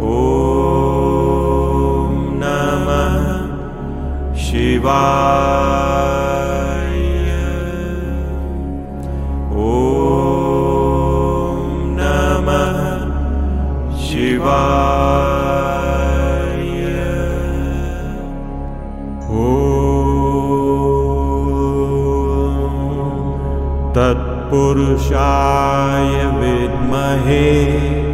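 A male voice chanting a Sanskrit Shiva mantra in long, drawn-out sung phrases over a steady low drone. A new phrase begins about every five seconds, each opening with a rising slide in pitch.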